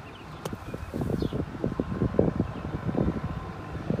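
A golf wedge chopped steeply down into bunker sand right behind the ball, the leading-edge-first shot for a bunker with little sand: one sharp strike about half a second in, with a short hiss of sprayed sand. Then uneven low rumbling of wind on the microphone.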